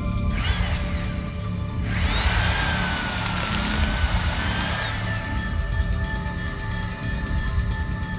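Cordless power drill running: a short burst with a whine that rises and falls about half a second in, then a steady high whine for about three seconds that dies away around five seconds in.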